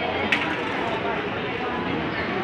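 Crowd chatter from many people in a large hall, with one sharp click about a third of a second in.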